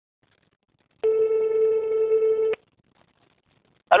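Telephone ringback tone heard on the calling end of a French phone line: a single steady tone, with a fundamental near 440 Hz, lasting about a second and a half and starting about a second in.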